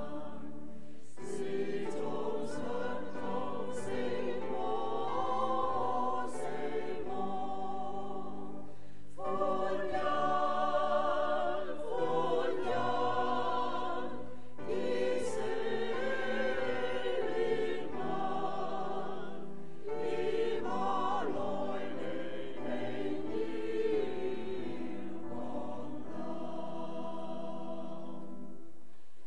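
A choir of many voices singing a hymn together in sustained phrases several seconds long, with short breaks between phrases.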